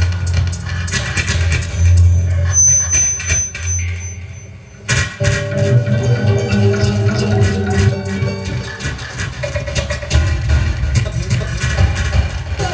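Live experimental electronic music from tabletop electronics played through an amplifier: a heavy low throb under dense crackling, and a thin high whistling tone for about two seconds. About four seconds in, the sound dips, then cuts back in abruptly with held mid-pitched tones over the low throb.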